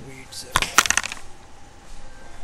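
A brief clatter of sharp clicks, several in quick succession about half a second in, like small hard objects knocking together.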